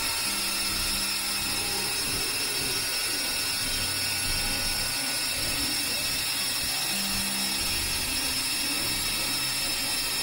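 Synthesizer noise drone: a steady, dense hiss laced with fixed high tones. A low held note sounds briefly near the start and again about seven seconds in.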